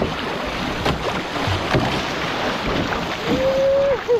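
Water rushing and splashing along the hull of a one-person outrigger canoe (OC1) as it is paddled through chop, with wind on the microphone. A short held tone sounds near the end.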